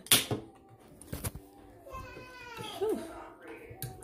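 Two short knocks or clicks, then a high voice in the background and a woman's short "ooh".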